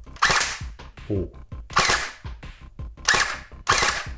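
WELL D-90F electric airsoft gun (a P90 copy with a copied Tokyo Marui Boys mechbox) firing indoors: four short sharp firings, the last two close together near the end. The gun is one that often misfeeds BBs, by the owner's account.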